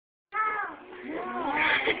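High-pitched vocal calls: a first call falling in pitch, then a few calls sliding up and down, followed near the end by a louder burst of laughter.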